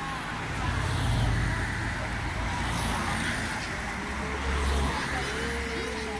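Road traffic: motor vehicles driving past, swelling about a second in and again near the end, with people's voices faint in the background.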